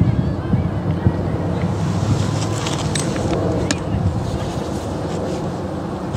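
Wind buffeting the microphone as a steady low rumble, with faint distant voices from across the field and a few sharp clicks around the middle.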